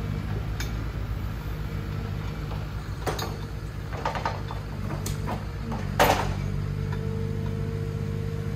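Forestry forwarder's diesel engine running steadily while its hydraulic crane handles logs with the grapple, with several knocks and clunks from the logs and crane; the loudest clunk comes about six seconds in.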